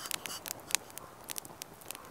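Wood campfire crackling: a run of sharp, irregular pops and snaps.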